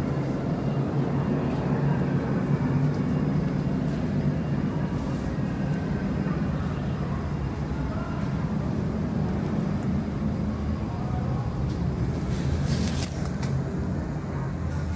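Steady low background rumble, with a few faint clicks near the end.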